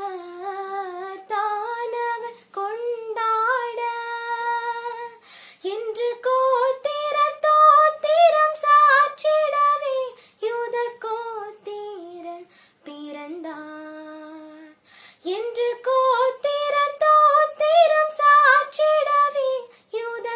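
A girl singing a Tamil Christian song solo, without accompaniment, in long held notes with small pitch bends, phrase by phrase with short breaths between.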